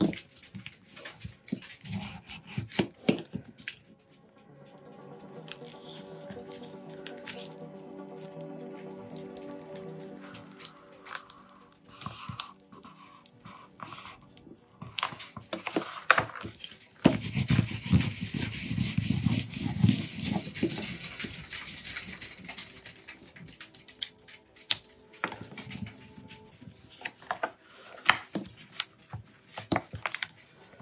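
Handling and peeling of transfer tape and vinyl on its backing sheet: rustling, crinkling and small clicks, with a louder spell of crinkling and peeling about halfway through. Soft background music plays underneath.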